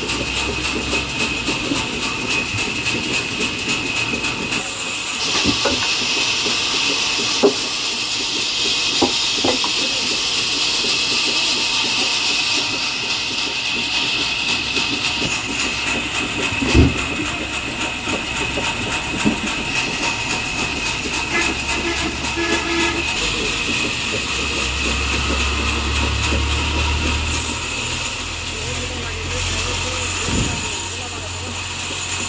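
Sawmill bench circular saw running with a steady high whine, with long stretches of louder hiss as mahogany wood is fed through the blade. A few sharp knocks of wood are heard along the way.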